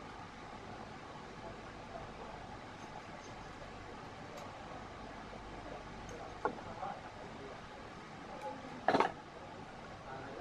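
Steady room hum under faint handling noise as a badminton string is woven through the cross strings of a racket on a stringing machine, with a small click about six and a half seconds in and a louder short knock near nine seconds.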